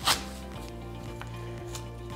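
A metal apple corer-slicer pressed down through a whole apple on a wooden cutting board, with one short crunch right at the start and a few faint clicks after it. Quiet background music plays underneath.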